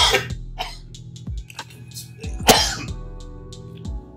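A man coughing sharply twice, once at the start and once about two and a half seconds in, over soft background music with a steady low drone.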